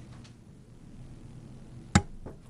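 A single sharp knock near the end, brief and much louder than anything else, over the low steady hum of a quiet meeting room.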